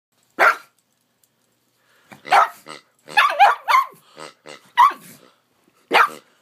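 A pug barking at a rubber pig toy: one short bark about half a second in, then a quick string of short barks from about two seconds on.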